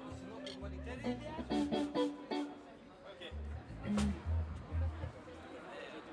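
Electric guitar and electric bass playing a few loose notes and short phrases rather than a full song, with one sharp hit about four seconds in; the playing stops about five seconds in.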